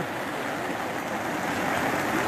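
Heavy rain falling, a steady even hiss of water.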